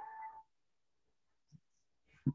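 Near silence after a held voice sound trails off in the first half second; one faint short blip about one and a half seconds in.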